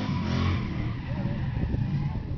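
Pickup truck engine revving hard during a burnout. The revs climb until about half a second in and then ease off, over the steady noise of spinning tyres.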